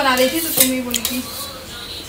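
A spoon clinking and scraping against a cooking pan as food is stirred, with a couple of sharp clinks about half a second and a second in.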